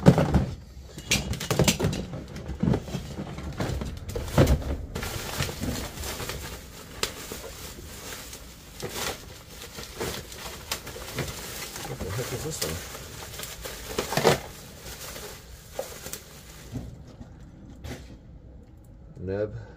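Handling and rummaging through stored belongings: black plastic bags rustling and crinkling, with irregular knocks and clunks as objects are moved, a few of them sharper.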